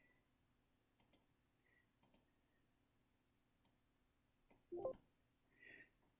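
Faint computer mouse clicks in near silence: two quick pairs of clicks about a second apart, then a couple of single clicks, and a brief soft low sound near the end.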